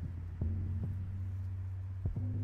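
A steady low hum made of a few even tones, with two soft knocks about half a second and just under a second in.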